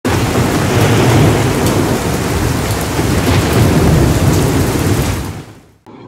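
Loud, steady rushing noise with a deep rumble underneath, like heavy rain with thunder, fading out in the last second.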